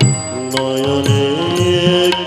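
Bengali devotional bhajan music: a sustained melody on voice and harmonium that steps up in pitch, over a few low hand-drum strokes.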